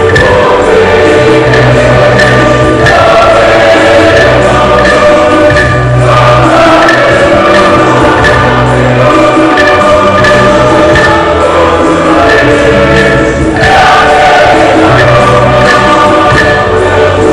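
A church choir singing a hymn with instrumental backing and a steady low bass line, loud and continuous.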